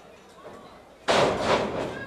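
A wrestler's body hitting the ring canvas: one loud, sudden thud about a second in, followed by a noisy fading tail from the ring and hall.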